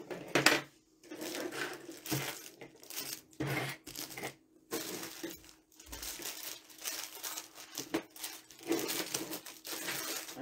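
Metal costume jewelry (gold-tone earrings, chains and necklaces) clinking and rattling in quick irregular clicks as it is rummaged through on a tabletop, with rustling from small plastic bags. The loudest clatter comes about half a second in.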